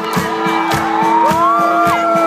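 A live rock band playing a slow song, recorded from within the audience: steady held instrument notes under a steady beat, with a singing voice carrying a melody from about half a second in.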